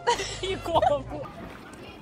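Young women's voices laughing and exclaiming for about the first second, then fading to a quieter background.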